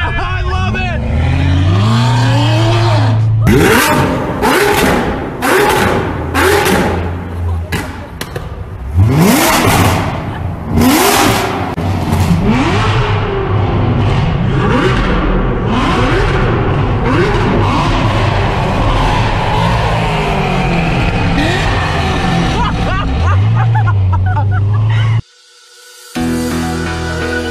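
Chevrolet C7 Corvette V8 being revved again and again, each rev rising and falling in pitch, partly echoing inside a tunnel. A quick run of sharp cracks comes a few seconds in, and the sound cuts off suddenly just before the end.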